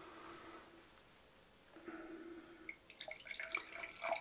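Water being poured into a glass champagne flute: faint trickling and small splashes as the glass begins to fill, starting about three seconds in.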